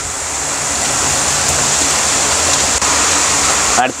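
A steady hiss of rushing noise, like a whoosh, that swells slowly and cuts off abruptly near the end.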